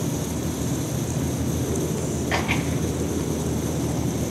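Pop-up MP rotator sprinkler head spraying its multiple rotating streams of water, a steady hiss over a steady low rumble. Its nozzle has just been cleared of a small rock clog.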